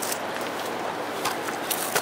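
Steady outdoor background hiss with a few faint ticks.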